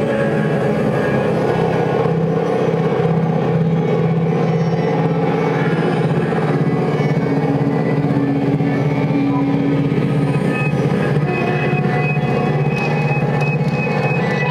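Live drone music in D: a violin bowed through effects pedals and a small amplifier, thick layers of low held tones sounding together at an even level.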